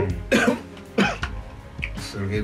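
A man coughing twice in quick succession, two short harsh bursts about half a second apart, over quiet background music.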